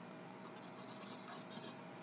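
Quiet room tone on a lecture recording, with a faint brief sound about one and a half seconds in.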